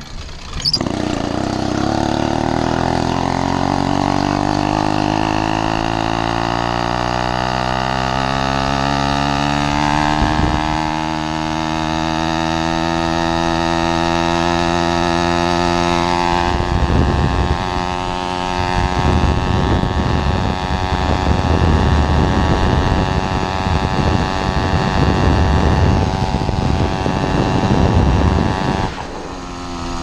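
Zeda PK80 two-stroke motorized-bicycle kit engine (80cc/66cc) at full throttle, its pitch climbing steadily for about ten seconds as the bike accelerates, then holding high at cruising speed. In the second half, wind buffets the microphone over the engine, and near the end the engine note drops as the throttle eases off.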